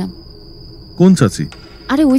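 Crickets trilling in a steady high tone, a night-ambience sound effect under the drama; a voice speaks briefly about a second in.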